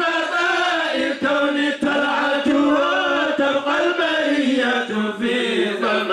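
A man singing an Islamic devotional chant into a microphone, in long held notes that slide and waver, with short breaks for breath.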